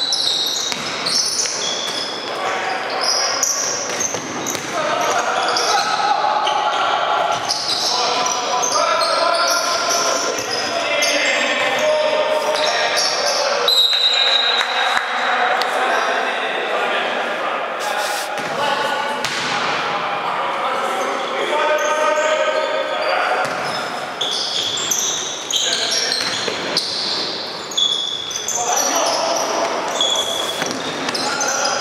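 Basketball game in a large, echoing gym: the ball bouncing on the floor, shoes squeaking, and players' voices calling out.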